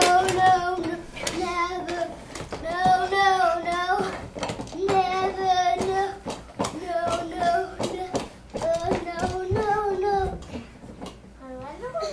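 A child singing a tune in short phrases of held notes without clear words, with small knocks of toys.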